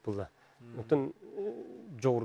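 A man talking, his voice close to the microphone; in the second half he draws out one voiced sound for most of a second, which slides down in pitch at its end.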